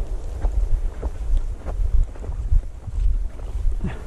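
Wind buffeting a body-worn camera's microphone, an uneven low rumble, with faint brushing and step sounds of someone walking through dry, tall field grass.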